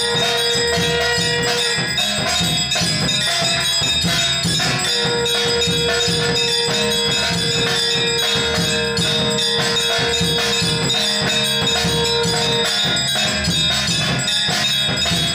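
Temple aarti sounds: a brass hand bell and other temple percussion ringing and clanging in a fast, steady rhythm. A long, steady held tone sounds at the start and again from about five seconds in until near the end.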